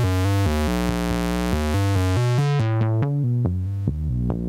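Doepfer A106-1 Xtreme low-pass/high-pass filter on a modular synthesizer, filtering a fast repeating sequence of short analog oscillator notes. About two and a half seconds in, the cutoff is turned down and the notes turn dull and muffled as the treble dies away.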